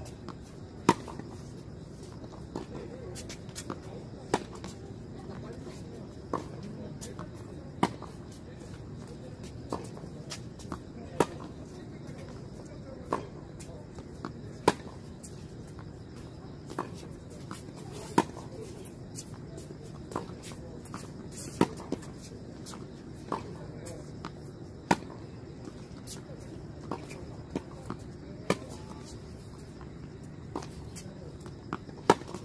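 Tennis ball struck by rackets in a long, unbroken baseline rally: a loud, sharp hit from the nearby player about every three and a half seconds, alternating with fainter hits and bounces from the far end of the court.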